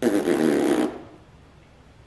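A man blowing a breath out hard through pursed lips, a short burst of under a second.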